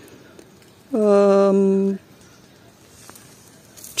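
A woman's drawn-out hesitation sound, a single held 'ăăă' at one steady pitch lasting about a second, in the middle of a pause between sentences.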